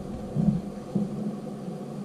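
Steady low background hum with faint handling noise as a foam air filter is turned over in the hand, and a brief murmured sound about half a second in.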